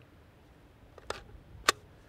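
Polymer AK magazine handled in gloved hands: a light click about a second in, then a sharper, louder click just over half a second later.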